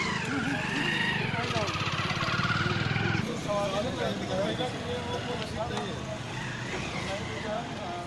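A motor vehicle engine running close by with a whine that rises and falls. It stops abruptly about three seconds in, leaving scattered voices.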